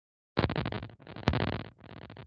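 Loud bursts of rough crackling noise over a video call's audio, with a sharp click about a second and a quarter in.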